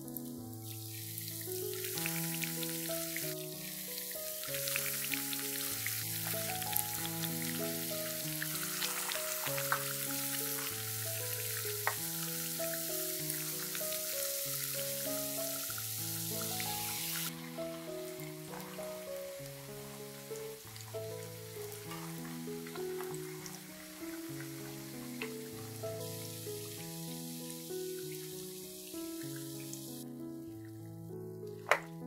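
Yeast-dough donuts deep-frying in hot oil: a steady sizzle with fine crackles, louder in the first half and dropping suddenly to a lighter sizzle a little past halfway. Background music with a simple melody plays throughout.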